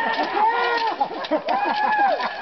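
Several people shouting and whooping over one another, with laughter, including one long held yell near the end.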